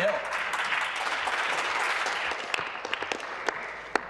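Applause from a chamber of legislators: a dense patter of clapping that thins out about three seconds in, leaving a few scattered claps.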